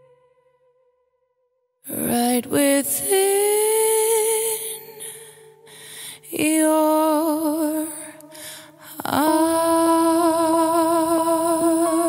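A song's last note fades out into about a second of near silence, then the next track begins: a voice singing long, wavering held notes in three phrases, starting about two, six and nine seconds in.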